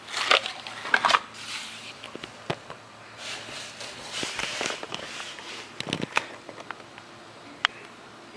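Handling noise: rustling and scattered light clicks and taps in short irregular bursts, loudest in the first second and a half.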